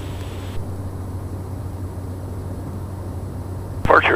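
Steady low drone of a Cessna 208 Caravan's single PT6A turboprop engine and propeller at climb power, heard in the cockpit with a strong low hum. A hiss drops away about half a second in, and a sharp click comes just before the end as a radio transmission opens.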